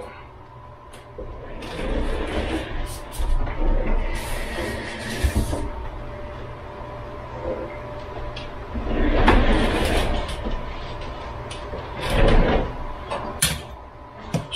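Kitchen handling noises while cooking: several irregular bursts of rustling and clatter, with sharp clicks near the end, over a faint steady hum.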